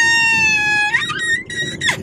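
A woman's high-pitched, excited held vocal note, like a long sung "ahh" squeal, lasting about a second, followed by a few short shrieks of laughter.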